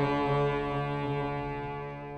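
Harmonium holding the final chord of a shabad kirtan, a steady sustained chord slowly fading out as the piece ends.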